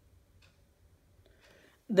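Near silence: quiet room tone with a few faint short clicks, about one a second.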